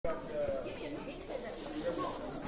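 Indistinct chatter of many voices in a gym, with no clear words, and a brief hiss building near the end.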